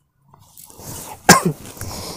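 A woman gives one sharp cough a little past halfway, against the rustle of a cotton-silk saree being lifted and shaken out.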